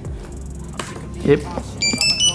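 Zebra DS2208 barcode scanner's beeper sounding a quick run of short high beeps near the end, its power-up signal on being plugged into the laptop's USB port.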